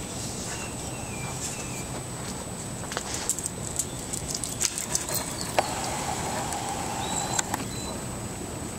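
Backyard outdoor ambience with faint bird chirps and a few light clicks and knocks, the sharpest about five and a half seconds in.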